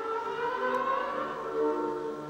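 Background music: a sustained chord of several held notes, continuing into orchestral string music.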